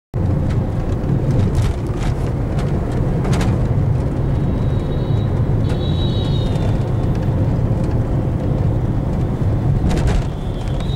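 Inside a moving car in city traffic: a loud, steady low rumble of engine and road noise, with a couple of brief, faint high-pitched tones around the middle.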